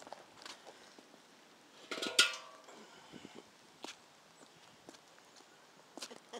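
Metal milk can clanking once about two seconds in, a short ringing clang, with a few faint knocks and scuffs around it.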